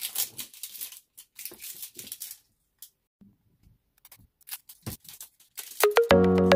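Plastic wrapping being torn and peeled off a toy can, with crinkly tearing in two stretches over the first two seconds or so. A few light clicks and taps of the can being handled follow near the end.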